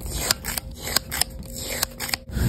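A metal scoop crunching and scraping through granular body scrub as it scoops it into jars, with a string of sharp, crisp crunches a few times a second.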